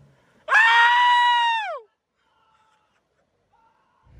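A man's long, high-pitched yell, held for over a second and dropping in pitch as it ends.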